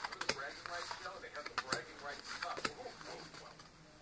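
Yu-Gi-Oh trading cards being shuffled through by hand one at a time, the card stock giving light irregular clicks and snaps as each card is slid off the stack.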